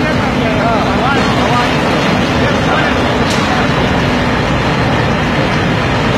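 Loud, steady din of a steel rebar rolling mill running as red-hot bars feed through it, with a faint steady hum under it in the first half. Voices call out briefly during the first second or so.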